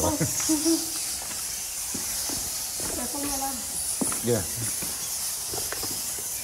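Low voices and laughter over a steady high hiss.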